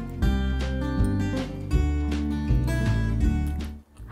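Background music of strummed acoustic guitar chords, a new strum roughly every three-quarters of a second, breaking off just before the end.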